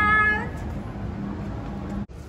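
A woman's high-pitched, drawn-out excited squeal, one held note that fades out about half a second in, over a steady low hum.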